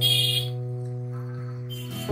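Background music of soft held chords, with a brief bright chime-like shimmer near the start.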